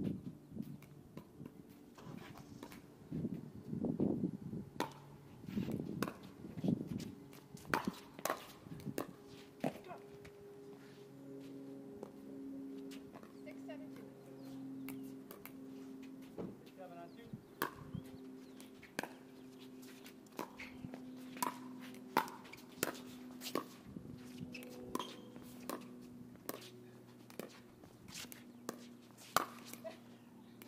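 Pickleball paddles hitting a hard plastic ball in a rally: sharp, hollow pops coming roughly once a second in the second half, with scuffing footsteps on the hard court. A few voices are heard near the start.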